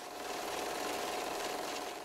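Film projector sound effect: a steady mechanical whirring clatter that fades in, holds for about two seconds, and fades out.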